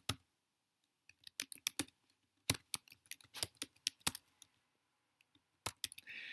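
Typing on a computer keyboard: uneven runs of key clicks, with a pause of just over a second before a last few keystrokes near the end.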